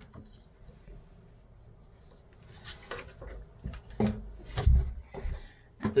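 Plastic clicks, knocks and rattles as a raw-water pump is twisted and lifted out of its housing. It is quiet at first, then a run of short handling sounds from about halfway, with a couple of dull thumps towards the end.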